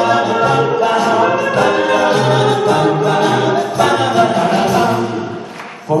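An a cappella vocal ensemble singing in harmony, heard live in a large hall. The voices fade briefly just before the end, then come back in.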